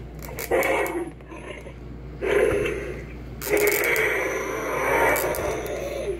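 The plastic action mechanism of an Indominus Rex toy figure scraping and grinding as it is worked by hand, in three bursts, the last and longest from about three and a half seconds. The grinding noise is the toy's fault that its owner points out.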